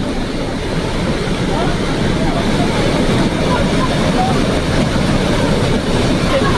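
Swollen flash-flood water rushing over a low causeway, a loud steady rush of water with faint voices of people nearby.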